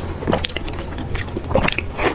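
Close-miked chewing of soft glazed pork belly: wet mouth and lip sounds with irregular small clicks, a few sharper ones about a second and a half in.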